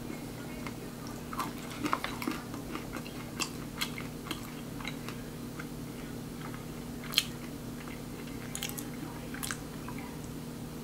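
Crunchy chewing of a piece of dairy-free chocolate bark with hazelnuts and crispy rice: irregular crisp crunches, thickest in the first half, with one sharper crunch about seven seconds in.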